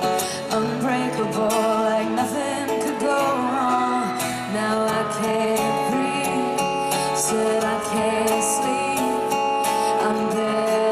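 Live acoustic performance: a female lead vocal sung over strummed acoustic guitar.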